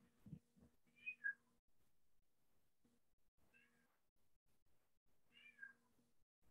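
Three faint, short animal calls, each sliding down in pitch, about two seconds apart.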